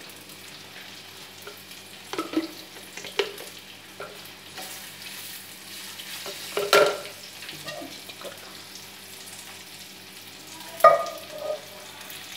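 A spoon scraping and knocking a few times in an empty non-stick pot as oil is spread over its base, over a steady low background hum.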